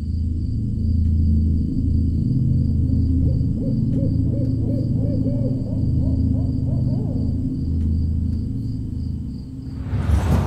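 A dark, low droning horror-film score. In the middle comes a run of about eight quick hooting notes, like an owl, and just before the end a sudden swelling whoosh.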